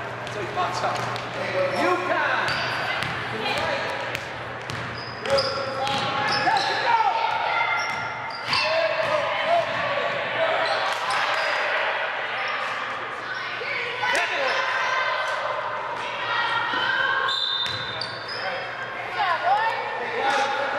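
A basketball bouncing on a hardwood gym floor during play, with short squeaks from sneakers and indistinct shouting from players and onlookers echoing in the gym.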